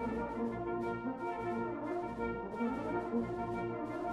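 Brass band playing a slow passage of held chords, euphoniums among the voices, in a concert hall.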